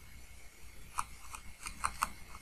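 Stylus tapping and clicking on a pen tablet while handwriting, a quick cluster of five or six short clicks in the second half over a faint steady hum.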